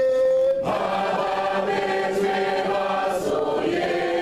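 A crowd of voices singing a song together. A held note ends about half a second in, and a new, fuller phrase begins.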